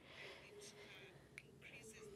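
Near silence: a pause between sentences of speech, with only faint traces of a voice.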